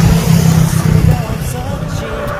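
Engine of a small truck passing on the road, a loud low drone that eases off after about a second and a half.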